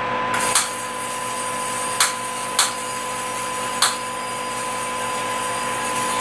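A 60,000-volt spark electrode is switched on about a third of a second in, and a steady high hiss sets in. Four sharp snaps follow, sparks jumping between the electrodes inside a glass flask. All of it sits over a steady hum with a thin constant whine.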